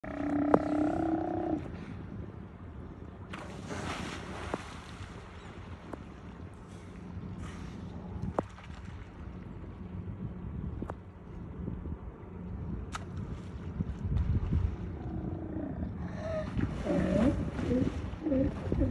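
Sea lions growling: one long, held low call at the very start, then a run of grumbling calls near the end, as one heaves itself out of the water against the dock edge.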